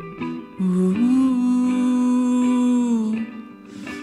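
A man hums a long wordless note, held for about two seconds and easing down in pitch at its end. It comes after a few picked notes on an archtop guitar.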